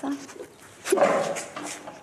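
A woman's short, loud distressed cry, a sob-like wail, about a second in, right after she finishes a spoken phrase.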